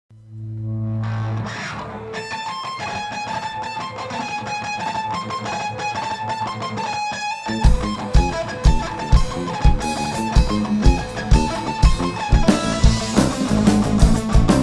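A rock band playing live. An electric guitar plays a picked riff alone, then about seven and a half seconds in the drums and bass come in with a steady kick-drum beat and the full band plays louder.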